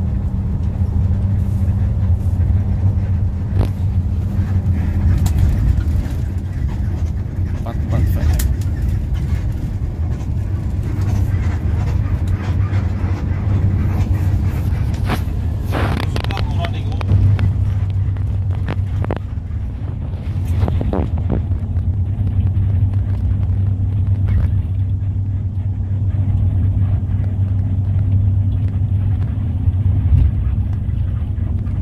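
Bus engine and road noise heard from inside the passenger cabin while driving: a steady low drone with a constant hum, broken by occasional clicks and knocks.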